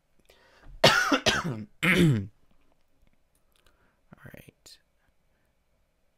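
A man coughing: a quick run of three harsh coughs about a second in, then a couple of faint short sounds a few seconds later.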